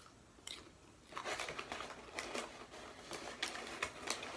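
A popcorn bag crinkling as a hand digs into it, with popcorn being chewed. A small click about half a second in, then a busy run of crinkling and crunching from about a second in.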